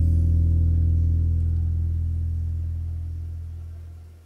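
The last chord of a karaoke backing track ringing out: one low sustained note with overtones that slowly fades away, dying out near the end.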